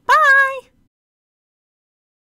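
A very high-pitched, cartoonish voice saying a single drawn-out 'Byeee!', lasting just over half a second and rising in pitch before it holds, followed by dead silence.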